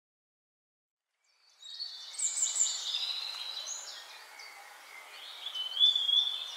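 Birds calling, many overlapping high chirps and whistles over a faint hiss, starting suddenly about a second and a half in after silence.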